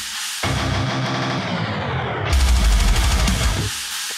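Heavy metal track played on an electric guitar with DiMarzio Titan pickups, distorted, with a drum kit. After a brief stop at the start, the top end narrows in a falling sweep while the low end thins out. A little past halfway the full band crashes back in heavily, with another short break near the end.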